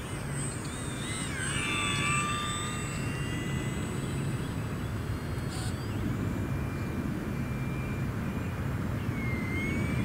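Small electric RC plane, an E-flite UMX Turbo Timber Evolution, in flight: the high whine of its brushless motor and propeller. The whine wavers and slides in pitch as the throttle changes during a low pass, settles, then sweeps upward near the end as it climbs.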